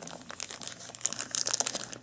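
Thin clear plastic bag crinkling as it is handled and opened by hand, a run of quick small crackles.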